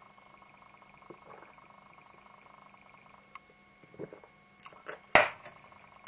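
A man sipping and swallowing beer from a glass, with soft mouth and swallowing noises over a faint steady hum, then a single sharp knock about five seconds in.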